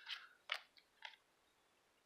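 Faint short scratches and slides of Magic: The Gathering cards being handled and shuffled through in the hands, three or four brief sounds in the first second.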